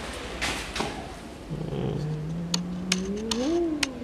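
A drawn-out hum from a man's voice, low and slowly rising, then swelling up and falling away near the end, with several sharp clicks in the second half.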